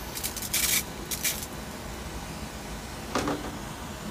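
Hand-pumped compression sprayer misting succulent leaves: a few short hissing spurts in the first second and a half, and a fainter spurt about three seconds in.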